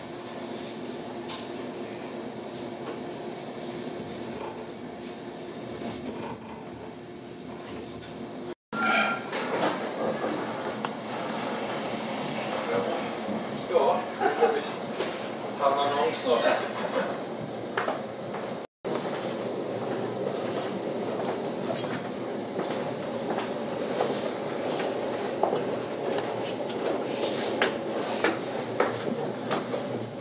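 Running noise of a passenger train heard inside the carriage: a steady rumble with a low hum. About a third of the way in it drops out briefly, then carries on louder with indistinct passenger voices, and there is a second brief dropout about two-thirds of the way in.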